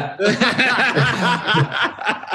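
Men chuckling and laughing in short, broken bursts, in reply to a joking answer.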